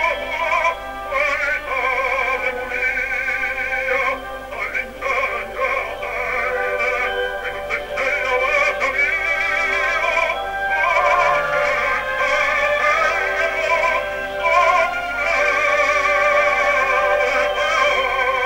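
Operatic baritone singing sustained phrases with a wide, even vibrato. It is an old recording, narrow and thin-sounding, with little bass or treble.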